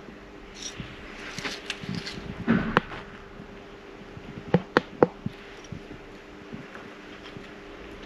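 Light handling noises of a small metal hand tool: scattered clicks and taps, with three sharp clicks close together about halfway through, as a feeler gauge is handled and worked in at the valve rockers of a small four-stroke outboard. A faint steady hum runs underneath.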